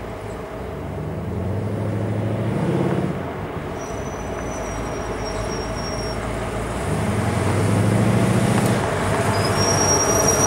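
1971 Dodge Coronet's 400 big-block V8 engine running at low speed, picking up twice in short bursts of throttle and growing louder as the car draws up and passes close. A thin high-pitched squeal sounds twice, in the middle and again near the end.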